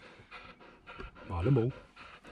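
Springer spaniel panting in a metal crate, with a man's voice sounding briefly about one and a half seconds in.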